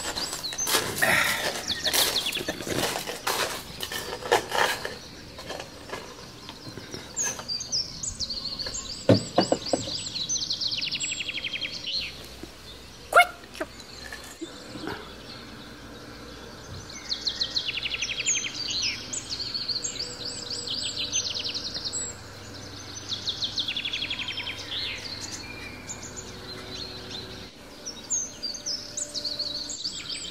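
Songbirds singing, repeating short trilled phrases, with a burst of clattering knocks in the first few seconds and single sharp knocks about nine and thirteen seconds in.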